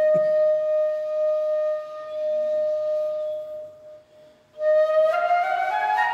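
Flute holding one long note that fades out about four seconds in; after a short pause it comes back in with a rising phrase. A soft low thump sounds at the very start.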